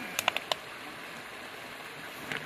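Four quick crackles of a plastic bottle being pushed under clothing in the first half second, over the steady rush of a shallow stream.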